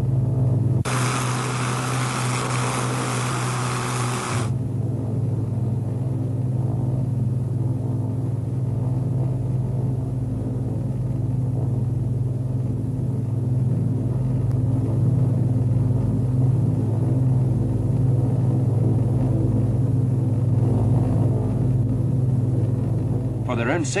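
Steady cockpit drone of a Canadair C-4 Argonaut's Rolls-Royce Merlin piston engines, with only the two port engines running at full power while the starboard engines are out and the aircraft flies slowly near the stall. A hiss cuts in about a second in and stops suddenly some three seconds later.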